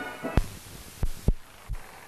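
Music stops at the very start, followed by four separate low thuds spread through the rest, the first and third the strongest, over a faint hum.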